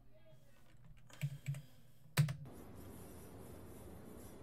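A few soft clicks, then one sharp, louder click a little over two seconds in, after which a steady hiss sets in.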